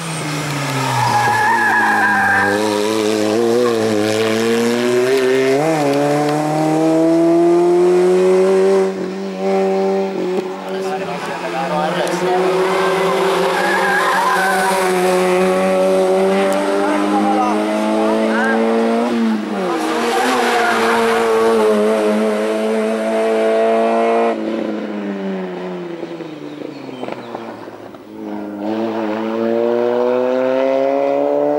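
Hill-climb race car's engine under hard acceleration, revs climbing and dropping again and again through gear changes and braking for bends. There is a short tyre squeal about a second or two in and again near the middle. Late on the engine fades as the car pulls away, then rises again near the end.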